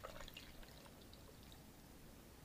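Faint pour of carbonated energy drink from two cans into a glass of ice, trickling out within about the first second and leaving near silence.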